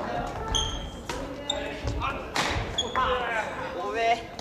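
Badminton rally in a gymnasium: several sharp cracks of rackets striking the shuttlecock and short high squeaks of shoes on the wooden court floor, ringing in the hall. Players' voices come in near the end as the rally finishes.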